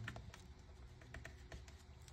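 Faint paper handling: a paper tag being folded and pressed flat by hand, with a few soft clicks and taps.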